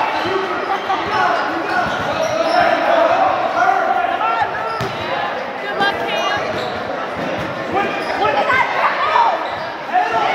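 A basketball bouncing on an indoor court during play, with a few high sneaker squeaks around the middle, echoing in a large gym hall.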